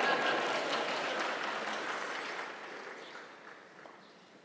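Audience applauding, the clapping fading gradually until it has nearly died away by the end.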